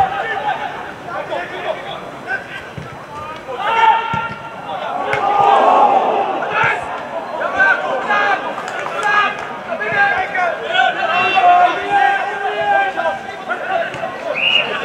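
Players calling out and shouting on a football pitch during open play, the shouts loudest about six seconds in and again near the end, with a few dull thuds of the ball being kicked.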